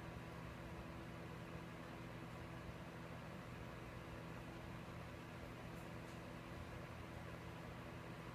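Steady low hum of a running machine with a faint hiss: room tone. A faint tick comes about six seconds in.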